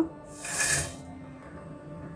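Broken dry Maggi noodles tipped into a pot of boiling carrot-milk, a brief rustling hiss about half a second in, over soft background music.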